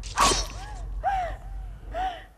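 Film-trailer sound design: a sharp whoosh hit just after the start, then a string of short tonal swoops that rise and fall about every half second over a low rumble.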